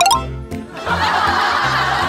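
Laughter breaking out about a second in, over background music with a pulsing bass line.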